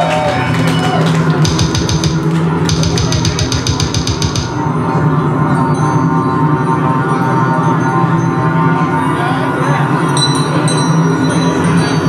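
Death metal band playing live: heavily distorted, low-tuned guitars and bass holding a steady wall of sound, with a run of very fast, even drum strokes and cymbal hits from about one and a half to four and a half seconds in.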